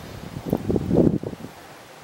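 Wind buffeting the camera microphone, a low rumble that swells about half a second in and dies away after a second.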